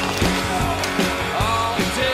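Rock music with guitar over a steady bass beat.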